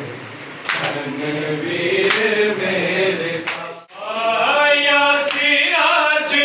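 Men's voices chanting a Punjabi noha, a Shia lament sung without instruments. The singing breaks off briefly just under four seconds in, then picks up again.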